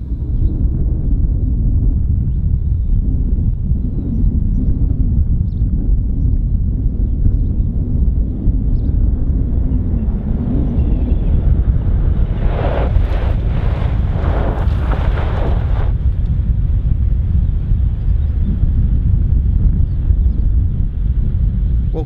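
Heavy wind buffeting the microphone throughout. Past the middle, for about three seconds, a car brakes hard on gravel, its tyres skidding and crunching over the loose surface in several surges as the brakes are jammed on and released.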